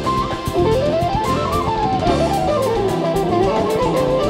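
Live jazz band: an electric guitar plays a quick solo line that falls, climbs for about a second, slides back down, then starts climbing again near the end. Drum kit with cymbal strokes, bass and keyboards play underneath.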